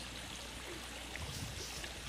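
Water pouring steadily from a pipe outlet over a mossy stone lip into the head of a small backyard stream, a small pump-fed waterfall.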